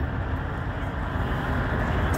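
Steady low rumble of heavy-vehicle noise with an even hiss above it.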